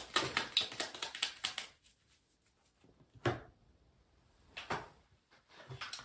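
Tarot cards being shuffled by hand: a quick run of snapping flicks, about six or seven a second, that stops after a second and a half, followed by a few single card snaps or taps.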